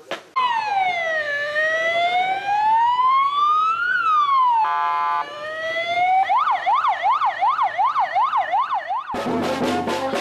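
Electronic vehicle siren: a slow wail falls and rises, a short steady horn blast breaks in about halfway, then a fast yelp cycles about three times a second. A brass band starts playing just before the end.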